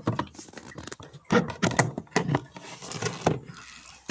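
Irregular knocks, clatter and scraping as a board is taken off the front of a beehive, with the loudest knocks in the middle of the stretch.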